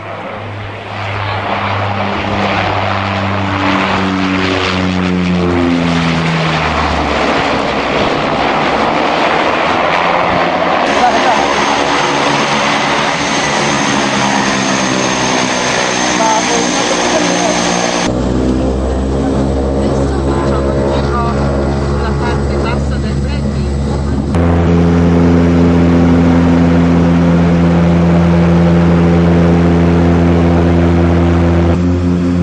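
Twin-engine turboprop plane's propeller engines running, their tone sliding down and up in pitch during the first few seconds. The sound changes abruptly several times, ending in a steady, louder drone.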